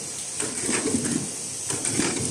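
Automatic bottle filling and capping line running: irregular mechanical clatter and short clicks, about two a second, over a steady high hiss.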